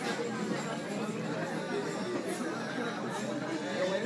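Background chatter of several people talking at once, an even, steady murmur of overlapping voices in a cafe.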